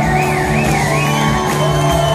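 A rock band playing live in a large hall, heard from the audience. A high whoop wavers in pitch over the music during the first second, with crowd shouts around it.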